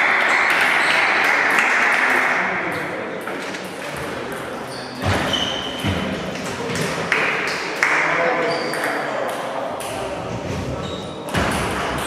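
Table tennis balls clicking off bats and tables in irregular rallies from several tables at once, some hits ringing with a short high ping, in a reverberant hall.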